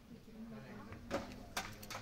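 Sharp slaps or thuds of training impacts in a hall, one about halfway through and a quick run of three or four near the end, over a low murmur of voices.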